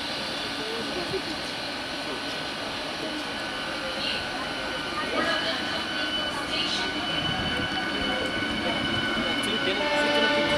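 Electric multiple-unit (EMU) suburban train rolling slowly past: a steady rumble of wheels on the rails that grows slightly louder. From about halfway through, steady high-pitched tones join it.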